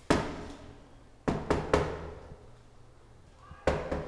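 A fist knocking on a door: one knock, then three quick knocks about a second later, and one more near the end.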